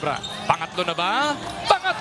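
Basketball bouncing on a hardwood court, with two sharp thuds about a second apart.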